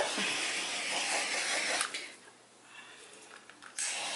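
Handheld torch hissing steadily as it is passed over wet acrylic pour paint to pop surface bubbles. It cuts off about two seconds in and starts again just before the end.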